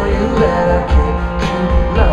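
Live pop-rock band playing, heard from the audience: drums, bass and electric guitars with a lead vocal.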